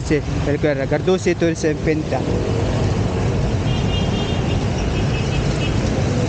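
A voice talking for about two seconds, then steady street traffic noise from a wet road.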